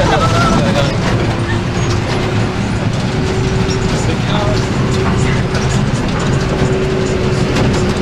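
Bus driving, heard from inside the passenger cabin: steady engine and road rumble with a held droning tone through most of it, and light rattles from the bodywork.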